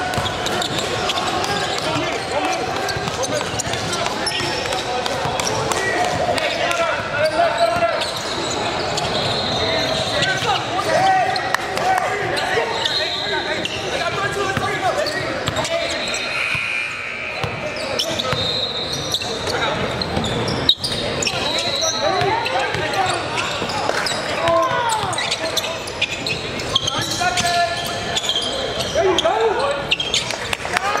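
Basketball game in a large gym: a ball dribbling and bouncing on the hardwood and sneakers squeaking, under continuous overlapping chatter and shouts from players and spectators. There is one sharp knock about two-thirds of the way through.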